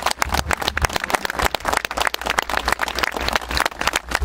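A crowd applauding: many hands clapping in a dense, uneven stream of sharp claps, some close to the microphone.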